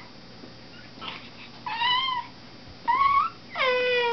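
A young child's voice: three short, high-pitched squeals about a second apart, the last one lower and falling in pitch.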